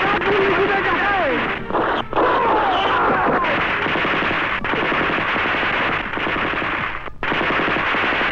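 Rapid, sustained automatic gunfire from a film shootout's sound effects, with shouting voices over it in the first few seconds.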